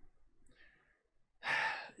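A man's short, audible breath about one and a half seconds in, after a near-quiet pause in talk, just before he speaks again.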